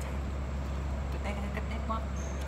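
Steady low hum of room noise at a constant level, with a man speaking briefly in the second half.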